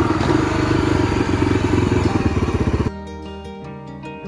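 Dual-sport motorcycle engine running while being ridden, the sound cutting off abruptly about three seconds in. Gentle plucked-string music follows near the end.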